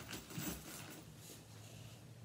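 Faint handling noises: a few soft rustles and light knocks in the first second or so, then only a low steady hum.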